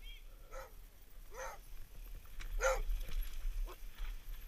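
A dog barking: four short barks, each dropping in pitch and spaced irregularly, the third the loudest, over a steady low rumble.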